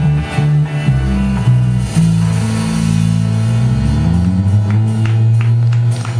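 A live band with acoustic and electric guitars and drums playing an instrumental rock passage without vocals. It moves through changing bass notes, then settles on a long held low note for the last couple of seconds.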